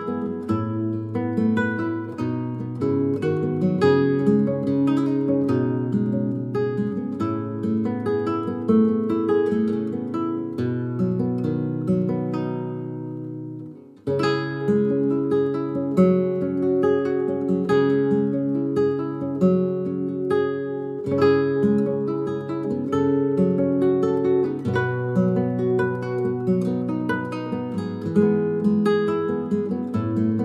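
Background music of acoustic guitar, fingerpicked notes in a steady flow. It fades out about 13 seconds in and starts again abruptly a moment later.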